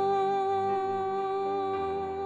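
A woman's voice humming one long held note into a microphone over sustained keyboard chords, with the chord below shifting near the end.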